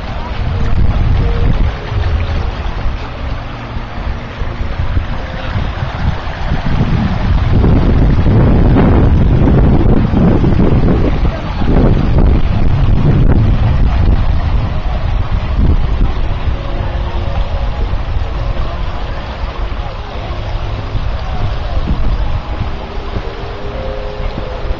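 Wind buffeting the camera microphone: a loud, uneven rumble that swells strongest about eight to thirteen seconds in and eases off toward the end.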